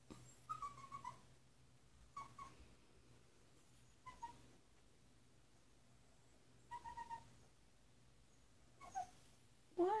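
Puppy whining in short, high-pitched whimpers, about five of them spread out with pauses between, each dropping slightly in pitch.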